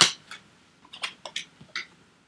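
A few light clicks and rustles of tarot cards being handled as the next card is drawn from the deck.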